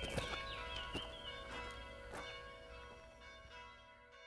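Church bells ringing and slowly dying away, with high chirping notes over them in the first second or so.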